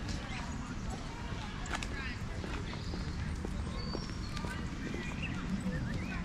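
Outdoor park ambience: the walker's footsteps on a paved path and distant people talking, with a few short high bird chirps over a steady low background noise.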